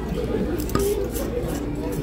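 Indistinct voices talking in a restaurant dining room over a steady low hum, with one brief click about three quarters of a second in.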